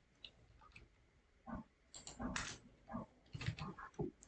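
A couple of faint computer keyboard keystrokes, then a few short, quiet vocal sounds over the rest.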